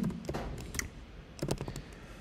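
Typing on a computer keyboard: about half a dozen separate keystrokes, with a quick run of three about a second and a half in.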